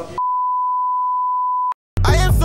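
An electronic beep: a single steady, pure high tone lasting about a second and a half, cut off abruptly with a click.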